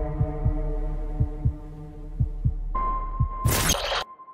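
Trailer sound design: a fading held synth chord over low double thumps about once a second, like a heartbeat. Near the end a steady high beep sets in, and a loud burst of noise fills the last half-second.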